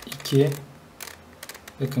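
Plastic 3x3 Rubik's cube being turned by hand: a few short, scattered clicks as its layers rotate.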